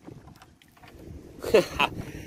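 Low wind and water noise around a small boat, with a short, loud, sharp sound about a second and a half in.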